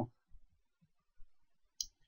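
A few faint clicks of a computer mouse in a quiet room, the sharpest one near the end.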